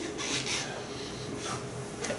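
A few soft, breathy chuckles from the lecture audience, heard as short bursts of hiss without a clear voice, near the start and again about one and a half seconds in.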